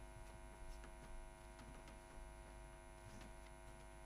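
Near silence: a steady electrical mains hum, with a few faint soft ticks.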